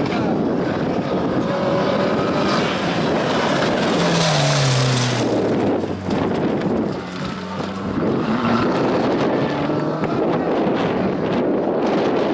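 Small turbocharged hatchback race car's engine revving hard and lifting off as it is thrown through a cone slalom, its pitch dropping sharply about four to five seconds in. Wind buffets the microphone.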